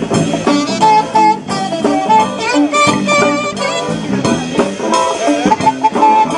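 Band music: an instrumental passage of a song, with melody lines over a steady beat and no singing.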